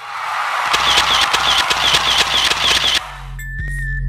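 Red-carpet sound effect: rapid camera-shutter clicks, about four a second, over a hiss of crowd-like noise. It cuts off about three seconds in as electronic music with a deep bass line begins.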